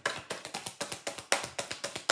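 A deck of oracle cards being hand-shuffled: a fast, even run of flicking taps as the cards slap against the deck, about ten a second.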